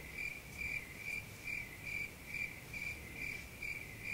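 A cricket chirping steadily, a single high chirp repeated about twice a second.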